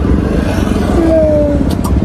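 Steady low engine rumble heard inside a car cabin, as from an idling car, with two quick kiss smacks near the end.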